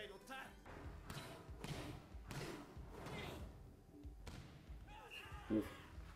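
Anime soundtrack of a volleyball match playing quietly: Japanese dialogue over a string of sharp thuds of the volleyball being hit and bouncing.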